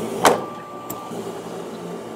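Big Bad Wolf two-horsepower inflatable blower running steadily on the launch tube, with a sharp pop about a quarter second in as a ball is blasted out of the tube. A brief thin tone follows the pop.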